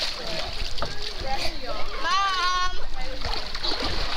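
Water splashing and sloshing around a child swimming in a spring-fed pool, with voices chattering and a high-pitched voice calling out once, about halfway through, rising and then holding its pitch.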